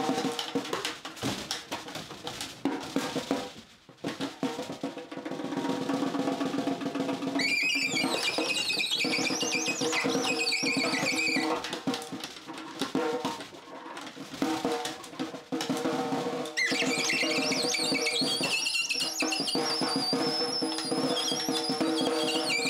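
Snare drum played with sticks in dense rolls and fast strikes. A saxophone joins twice with high, wavering squeals, from about a third of the way in until about halfway, then again over the last quarter.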